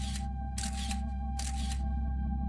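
A camera shutter firing three times, about a second apart, over a low, steady music drone.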